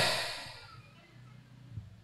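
The last word of a man's speech into a handheld microphone fades out, followed by a pause of near silence with only faint room noise.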